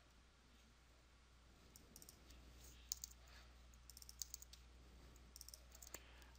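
Near silence broken by faint, scattered clicks of a computer keyboard and mouse, starting about two seconds in.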